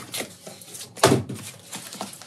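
Cardboard shipping box being handled and rustled as a small box is lifted out of it, with one sharp thump about halfway through.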